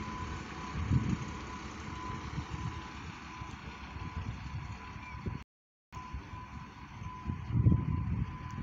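Distant garbage truck running, heard under a low rumble of wind on the microphone, with a faint steady high tone through it. The sound cuts out completely for a moment about five and a half seconds in.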